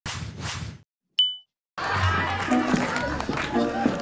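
A brief whoosh, then a single bright ding chime that rings out and fades quickly, the loudest sound here. About half a second later, voices and background music set in.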